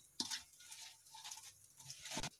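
Faint kitchen handling sounds around an iron kadhai as chopped mustard flowers go into hot water: a soft click shortly after the start, then a few scattered light rustles and taps.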